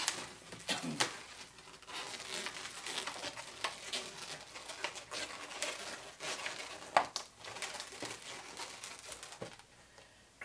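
Latex 260 modelling balloons being twisted and tied by hand: irregular rubbing and crinkling with scattered small clicks, one sharper click about seven seconds in.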